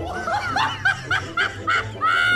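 A person laughing in quick, high-pitched bursts, about four a second.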